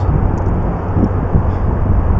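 Wind buffeting the microphone high on an open ledge: a loud, steady rumbling rush that is heaviest in the low end.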